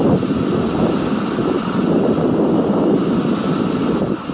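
Wind buffeting the microphone over the steady rush of rough sea breaking against a rocky shore.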